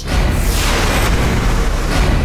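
Dramatic TV-serial background score: a loud, deep boom-like hit that opens into a dense, sustained musical swell.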